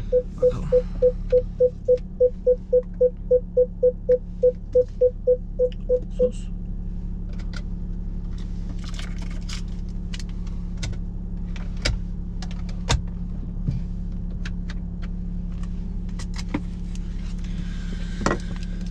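Jaguar XF's parking-sensor warning beeping rapidly, about four beeps a second, stopping about six seconds in. Under it a steady low hum from the parked car, then scattered clicks and light rattles from the key fob being handled.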